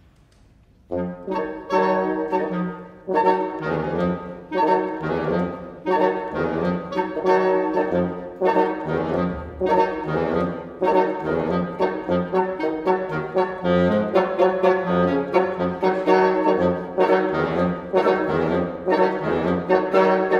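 Woodwind quartet, bassoon and clarinet among them, playing a dense contemporary chamber piece. After a brief silence the ensemble comes in together about a second in, with loud, thick chords and repeated accented attacks.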